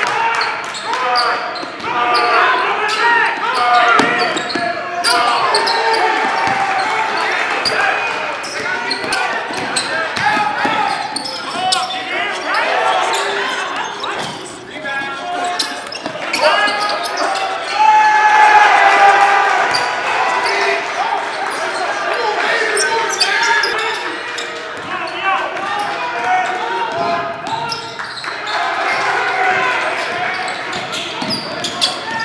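Basketball being dribbled on a hardwood gym floor during live play, with voices of players and spectators echoing in the hall.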